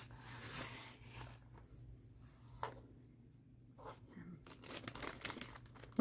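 Faint rustling and handling noises from hands moving craft materials on a tabletop, with a couple of soft clicks partway through.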